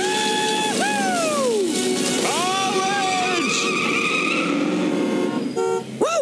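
Cartoon car tyres screeching over background music: a long held squeal that bends sharply down about a second in, then a second squeal that rises and holds.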